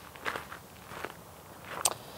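Footsteps on loose gravel: a man walks several paces, each step a short crunch, and the last one, near the end, is the sharpest.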